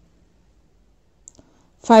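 Quiet room tone broken by one short, faint click about a second and a quarter in, from a pen on a notebook page; a woman's voice starts speaking near the end.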